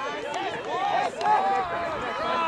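Several voices shouting and calling out over one another from the field and sideline during a point of outdoor ultimate frisbee, with no single clear word.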